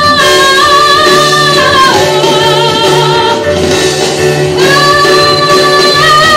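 A woman singing a pop ballad into a handheld microphone with instrumental accompaniment, holding long notes with vibrato. Her pitch steps down about two seconds in and rises again a little past the middle.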